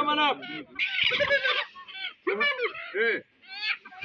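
Chickens squawking and clucking in a series of short, loud calls, mixed with people's voices.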